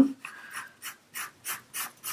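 Pencil lead scratching on paper in a series of short strokes, about three a second, as a rectangle's upright line is drawn.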